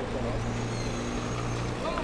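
A steady low motor hum, with faint distant voices over it.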